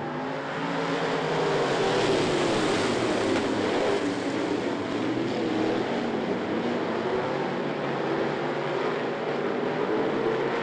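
A pack of dirt-track street stock race cars racing together, several engine notes overlapping and wavering in pitch. The sound builds over the first two seconds as the pack comes closer, then holds steady.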